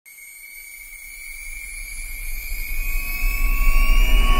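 Cinematic riser sound effect: a deep rumble with a thin high tone slowly gliding upward, swelling steadily louder throughout.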